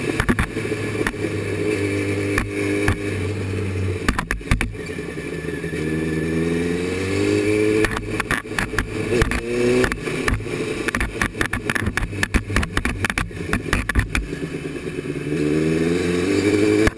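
Engine of a small caged single-seat buggy racer running under load, heard from the cockpit, its revs climbing several times as it accelerates. Frequent sharp rattles and knocks run over it.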